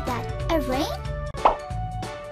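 Cartoon water-drop plop sound effect, one sharp plop about a second and a half in, over steady children's background music.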